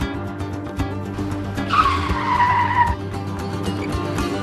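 Background music with a screeching tyre-skid sound effect, about a second long, near the middle; its squeal falls slightly in pitch before cutting off.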